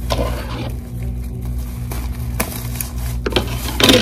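Plastic shopping bag rustling and crinkling as party supplies are pulled out of it by hand, in a few short, sharp bursts, the loudest near the end. A steady low hum runs underneath.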